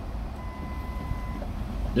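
A single steady electronic beep lasting about a second, over the low rumble of an idling car heard from inside the cabin.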